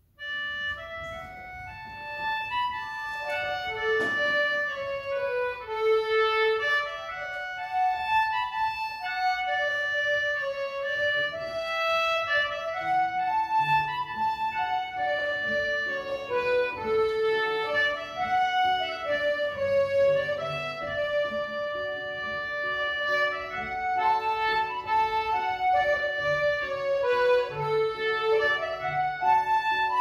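Concertinas playing a slow waltz tune together in a reedy, sustained tone. Lower held accompanying notes join about halfway through.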